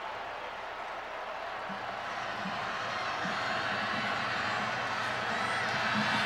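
Stadium crowd noise at a college football game, a dense wash of many voices that swells gradually louder.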